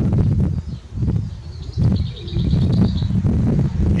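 A small songbird chirping a quick run of repeated high notes about halfway through, over a steady low rumble.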